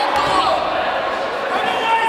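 A thump as grappling fighters go down onto the foam mat near the start, with shouting voices echoing in a large sports hall.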